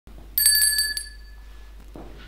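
A small handbell rung quickly, about five strikes, its ringing dying away within a second; a bell rung to mark the start of the service as the priest enters.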